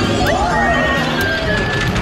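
Plastic pucks clacking against a mallet and the rails of a Pac-Man Smash multi-puck air hockey table, over a loud arcade din of electronic game tones and jingles.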